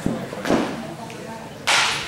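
Sharp knocks of baseballs during an indoor infield drill: two short knocks in the first half second, then a louder, sharper crack near the end.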